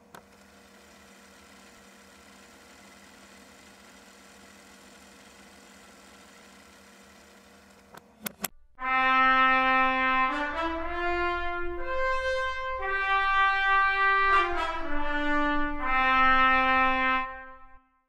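Sampled solo trumpet playing a legato phrase from a Cinesamples library: it holds a low note, steps up to a high note and comes back down to where it began. Before it there is a faint steady hum and a few clicks.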